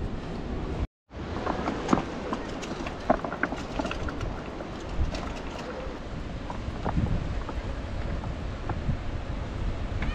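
Wind buffeting the microphone over the wash of sea surf on a rocky shore, with scattered light knocks. The sound cuts out completely for a moment about a second in.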